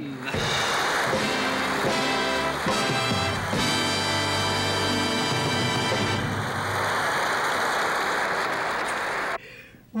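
Studio audience applause with the house orchestra playing a short fanfare over it. The music drops out about six seconds in, and the applause cuts off suddenly shortly before the end.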